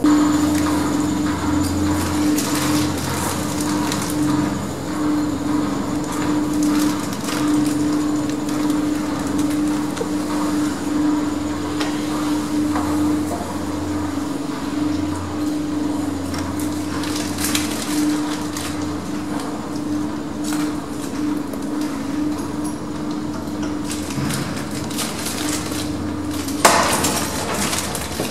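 Lift car travelling at full speed through its shaft, heard from on top of the car: a steady hum with scattered clicks and knocks throughout, and a louder clatter near the end.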